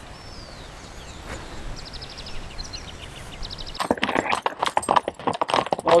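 A quiet stretch with a few faint high chirps, then, from about four seconds in, a horse's hooves clopping irregularly on a stony track during a ride.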